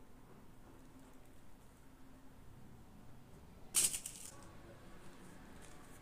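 A brief rustle, about two-thirds of the way in, as a sewing pattern and fabric are handled; otherwise only faint room tone.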